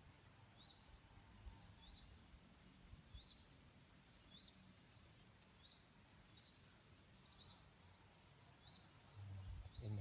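Near silence, with a faint bird call, a short chirp repeated about once a second. A brief low rumble comes in near the end.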